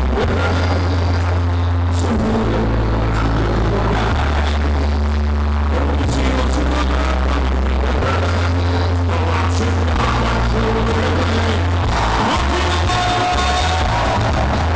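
Loud live music over a PA system: a deep bass line that changes note about every two seconds, with a man singing into a handheld microphone.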